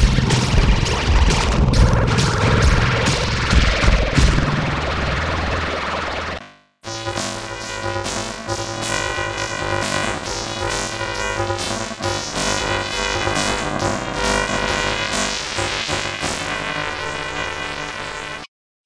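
Electronic TV ident jingle with a steady beat, heavily distorted and noisy for the first six seconds, then cutting out for a moment and resuming as a cleaner synthesizer tune with the same regular beat.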